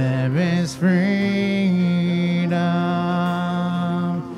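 Live worship song: a man's voice slides up through a short phrase, then holds one long note for about three seconds, over acoustic guitar and keyboard.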